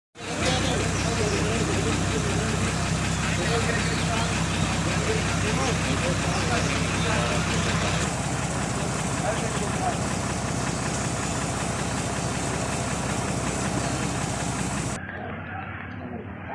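An engine running steadily at idle, with people's voices over it. Its note shifts about eight seconds in, and near the end it falls away, leaving quieter voices.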